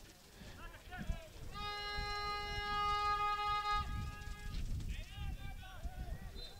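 Faint calls and shouts of players on a football pitch during open play. In the middle, a steady pitched tone is held for about two seconds and is the loudest sound.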